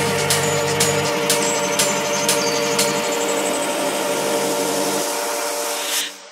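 Electronic techno music: a held synth chord over a hiss-like wash, with sharp percussion hits about twice a second that stop about halfway through, and a faint rising sweep. The bass drops away and the track fades near the end, as in a transition between tracks in a mix.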